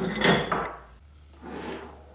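Small steel grease-gun parts handled on a wooden workbench, clinking and scraping for the first half-second. After a short pause comes a softer sliding sound of a toolbox drawer being opened.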